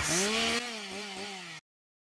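Chainsaw engine winding down as it is shut off: its note falls in pitch with a brief wobble and fades, then cuts off suddenly about a second and a half in.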